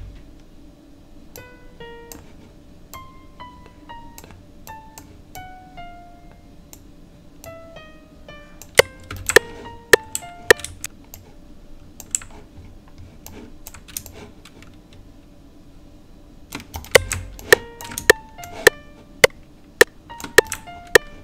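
Single notes of a software acoustic piano (Roland Zenology 'RockAcoustic' preset) sounding one at a time in short descending runs as they are auditioned while placed in the piano roll. Two clusters of loud, sharp computer clicks come about halfway through and again near the end.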